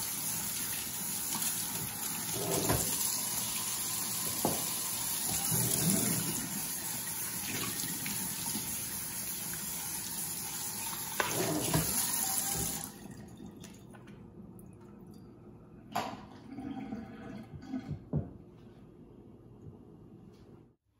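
Kitchen faucet's pull-down sprayer running water over a plastic hummingbird feeder base in a stainless steel sink as it is rinsed with water only, with occasional knocks. The water shuts off abruptly about two-thirds of the way through, followed by a few light knocks.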